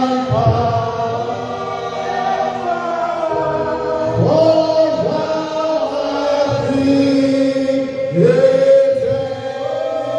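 A man singing a gospel song into a handheld microphone, with long held notes and glides between them.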